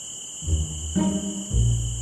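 Night ambience of steady cricket chirping, with a soft background-music bass line of low plucked notes entering about half a second in.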